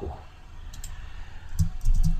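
A few light clicks of a computer mouse and keyboard while switching between programs, a pair near the middle and a quick cluster near the end, with a soft low thump near the end.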